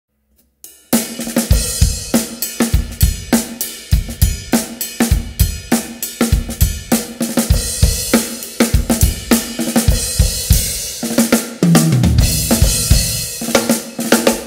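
Acoustic drum kit playing a funk groove at about 102 beats per minute, with hi-hat, snare backbeat and bass drum. It starts about a second in after a brief silence, and a fill comes near the end.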